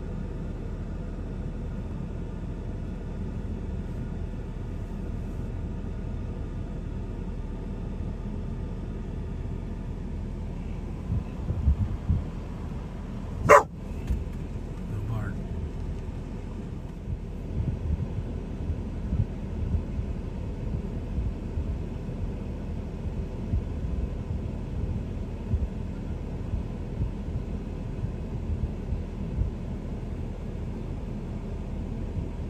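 Steady low rumble of a vehicle idling, heard from inside its cab, with one sharp click about halfway through and scattered low thumps in the second half.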